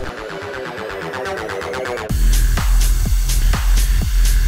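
Electronic dance music with no speech: fast repeating notes build up and grow louder for about two seconds, then a heavy bass drop comes in with a strong kick drum about twice a second.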